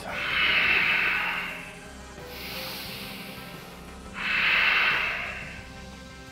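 A man breathing slowly and deeply close to the microphone to catch his breath after exertion: two long, loud breaths out about four seconds apart, with a quieter breath in between. Faint background music runs underneath.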